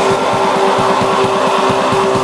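Black metal: distorted electric guitar holding a long sustained note over fast, even drumming.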